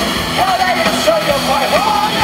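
Live rock band playing through stage speakers: a male vocalist's voice over amplified electric guitar and drums.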